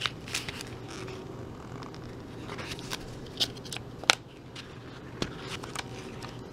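Paper instruction sheets rustling as they are handled and turned over, with scattered short, sharp crackles of the paper, the sharpest about four seconds in.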